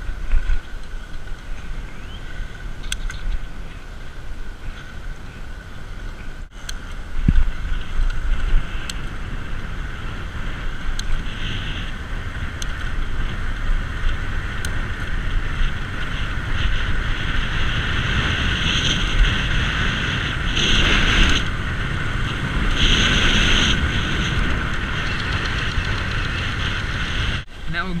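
Wind rushing over the microphone of a moving e-bike, with a steady high whine from a Bafang BBS02 750 W mid-drive motor running on pedal assist. The whine grows louder and brighter for a few seconds past the middle.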